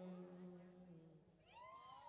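The last held note of a monk's sung lae chant fading out, then near silence with a brief, faint high cry that rises and falls in pitch in the second half.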